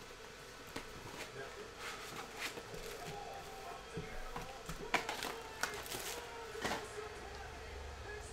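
2021 Topps Chrome Update Series hobby box and its foil card packs being handled: soft rustling and crinkling of the wrappers and cardboard, with a few sharper clicks and taps as packs are pulled out and set down in a stack, the sharpest about five seconds in and near the end.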